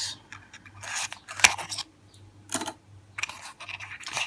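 Small cardboard product box handled in the fingers and its end flap pried open: a few short papery scrapes and rustles, with one sharp click about one and a half seconds in.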